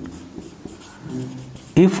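Marker writing on a whiteboard: quiet scratching strokes as a word is written, with a man's voice starting near the end.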